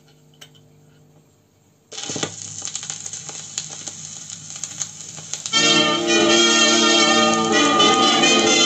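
Record player with a 1950s Soviet long-playing record: a faint hum and a light click of the tonearm, then the stylus sets down about two seconds in and the lead-in groove plays as crackle and pops. About five and a half seconds in, the first track, a slow foxtrot, starts, loud, through the player's own speaker.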